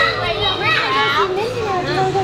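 Excited young children's high-pitched voices, with adults talking over them.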